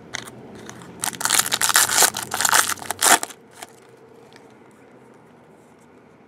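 Foil trading-card pack wrapper crinkling and tearing open, loud for about two seconds, then a few faint clicks as the cards are handled.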